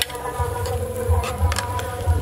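Insects buzzing steadily, with low bumps and a few light clicks.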